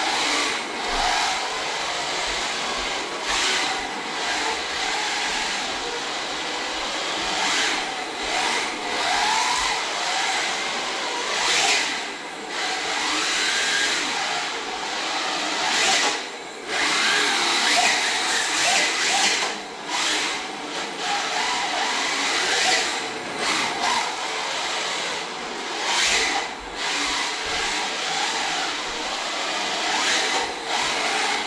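Electric 1/10-scale rear-wheel-drive RC drift car driven on a concrete floor: the motor whines and the hard drift tyres hiss as they slide. The sound surges and eases over and over with the throttle.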